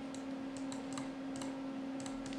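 Soft, scattered clicks of a computer mouse and keyboard, about half a dozen in two seconds, over a faint steady hum.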